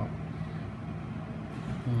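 A low, steady background hum, with a short murmured 'hmm' near the end.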